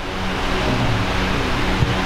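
A steady rushing noise, with a single soft click near the end.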